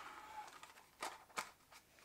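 Soft handling noises from a small cardboard box being opened: a few light taps and rubs of cardboard, the first about a second in.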